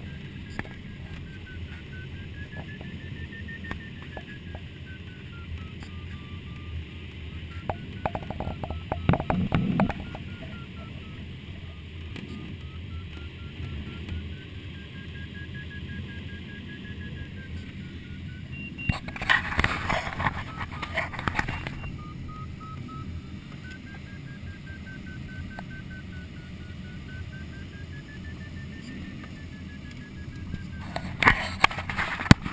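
Sailplane's audio variometer sounding a continuous tone that slowly wavers up and down in pitch, over the steady rush of airflow in the ASH 25 cockpit. A short rustle comes about a third of the way in, and a louder burst of hissing noise lasts a few seconds about two-thirds through.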